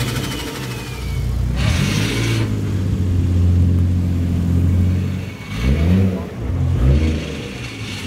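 Toyota Chaser's 1JZ-GTE 2.5-litre turbocharged straight-six being revved, the engine pitch rising and falling several times, with a high whistle falling in pitch in the first second or so and short bursts of hiss after the revs. With the wastegate actuator rod reconnected, the turbo is now building boost.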